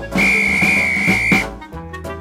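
A single high, steady whistle lasting just over a second, over upbeat children's background music.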